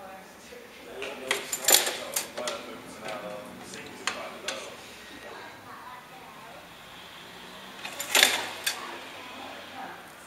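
Clatter of a wooden floor loom being worked: a cluster of sharp knocks and clacks about a second in and another near the end, with quieter handling in between.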